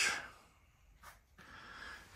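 A quiet pause between spoken phrases: one short breath about a second in, over faint room tone.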